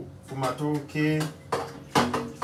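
A metal baking tray knocking and clattering against a steel kitchen sink, with one sharp clang at the end, under a man's voice.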